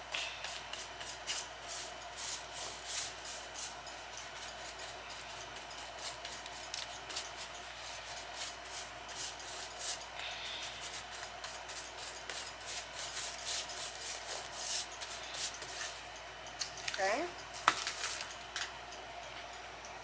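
Paintbrush stroked over a woven wood-splint basket: a run of short, irregular scratchy brushing strokes as paint is worked into the weave.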